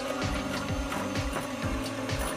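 Background music with a steady beat over the steady hum of an electric hand mixer, its two beaters whipping sponge batter in a glass bowl.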